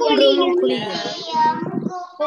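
A child singing, one voice carrying a melodic line throughout.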